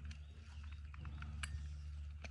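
Quiet outdoor background with a steady low hum, and a few faint, scattered clicks from spinning fishing reels being handled.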